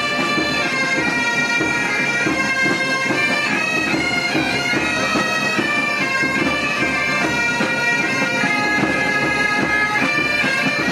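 Army pipe band bagpipes playing a tune, the melody moving in steps over a steady drone.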